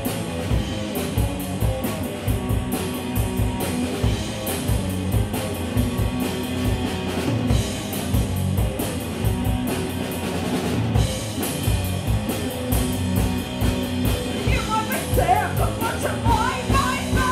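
Live rock band playing: drum kit with steady cymbal hits under electric guitar, mostly instrumental, with a voice starting to sing near the end.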